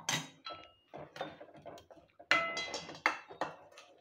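Steel ladle stirring thick masala gravy in a stainless steel pan, scraping and knocking against the pan's sides with short metallic rings. The loudest clank comes about two and a half seconds in.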